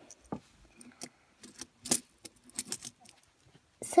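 Irregular small clicks and taps from hands handling a plastic fidget spinner with metal bearings and plastic toy pony figures, the sharpest click about two seconds in.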